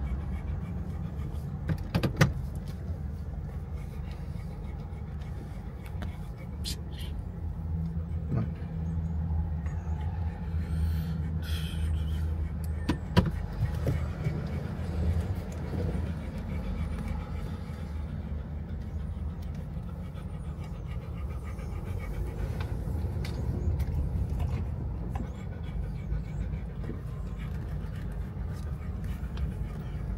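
A car's steady low hum of engine and tyre noise, heard from inside the cabin while driving. A few short sharp clicks stand out, one about two seconds in and a louder one about thirteen seconds in.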